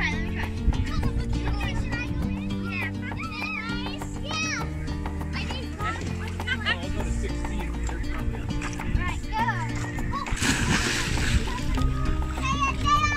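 Background music with children's voices over it, and a splash about ten and a half seconds in as a child jumps off the boat into the sea.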